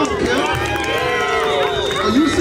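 Crowd of spectators at a youth football game shouting over one another during a play, several voices at once, some calls held long.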